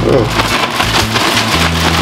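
Plastic bag of flour- and cornstarch-coated potato strips rustling as it is shaken, over background music with a steady bass line.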